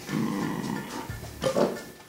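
A dog talking: two low vocalizations, a longer one at the start and a shorter one about a second and a half in.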